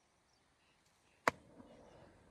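A single sharp smack about a second in: a rubber flip-flop slapped down hard onto an eel-like fish on the grass to kill it.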